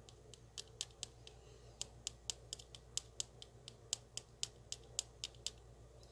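Quick, irregular light clicks, about three or four a second, as a small plastic bottle of binding powder is tapped to shake powder out onto a mixing canvas.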